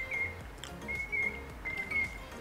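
A bird whistling three short, clear notes of about the same pitch, over faint background music.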